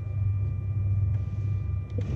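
Flashforge Dreamer NX 3D printer standing idle with its fans running: a steady low hum with two faint steady whine tones above it, and a couple of faint clicks.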